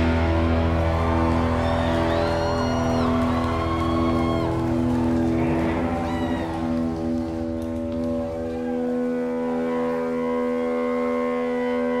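Electric guitars and bass left ringing as sustained chords with amplifier feedback after a song's final crash. Short whistling squeals rise and fall about two to five seconds in. The low bass note cuts out about two-thirds of the way through, leaving high held feedback tones.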